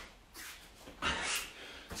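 A man's hard breath out while he exercises: a short, noisy puff about a second in, between quiet stretches.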